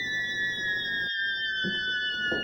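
Background score for a dramatic moment: a thin, high electronic tone with fainter tones above it, held and gliding slowly down in pitch.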